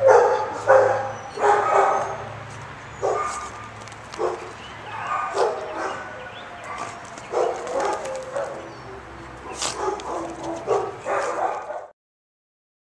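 A small dog barking and yipping in short, irregular calls, over and over, cutting off abruptly near the end.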